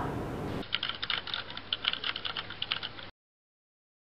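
Rapid clicking of keys on a computer keyboard, typing, starting about half a second in. It cuts off abruptly to silence about three seconds in.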